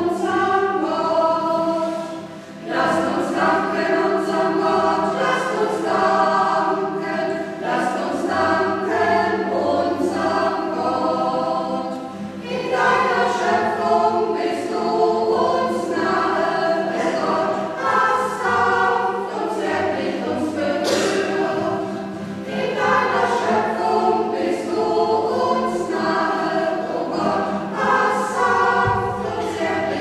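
A choir singing a hymn in phrases, with brief breaks between lines, in the reverberant space of a church.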